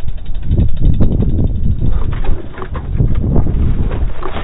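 Wind buffeting a mountain biker's body-mounted camera microphone, a loud, unsteady low rumble mixed with the tyres rolling fast over grassy ground.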